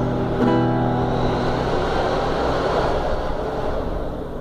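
Nylon-string classical guitar: a chord is strummed about half a second in and left to ring out. A steady rushing noise then covers the rest.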